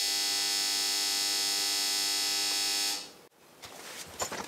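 A steady electronic buzzing tone rich in overtones cuts in suddenly and holds level, then fades out about three seconds in. It is followed by faint rustling and small clicks.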